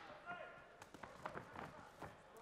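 Faint shouting voices with several short, dull thuds from the fighters' feet and bodies hitting the cage canvas during a takedown.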